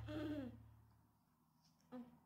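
A short hoot-like voice sound, sliding down in pitch, in the first half second over the fading end of background music, then near silence.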